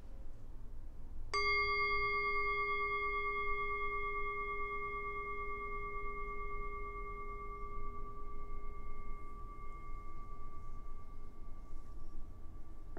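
Metal singing bowl struck once about a second in, ringing with several steady tones that fade slowly over the following ten seconds.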